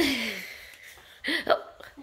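Exclamations of surprise: a drawn-out 'ohh' at the start, falling in pitch, then a couple of short 'oh' sounds about a second and a half in.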